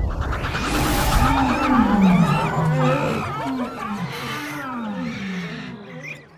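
A sound-effect chorus of wild animal calls, many overlapping cries that glide up and down in pitch. It opens with a sudden rush of noise and thins out toward the end.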